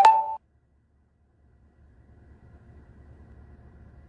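A short electronic beep, like a phone alert tone, at the very start. The sound then drops out to near silence for about a second before a faint low hum returns.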